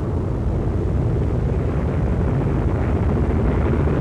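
Aircraft engines making a steady, dense rumble on an old archive film soundtrack.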